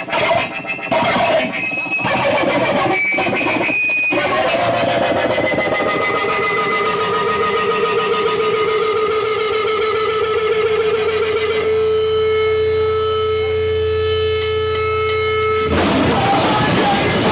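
Amplified electric guitar noise through effects: a few seconds of choppy, stuttering bursts, then a long sustained feedback tone that wavers in pitch and settles into a steady drone near the end.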